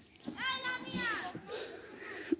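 Children's voices outdoors: one high-pitched child's call rising and falling about half a second in, followed by scattered chatter from the group.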